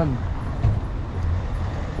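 Street ambience: a steady low rumble of road traffic, with a voice trailing off at the very start.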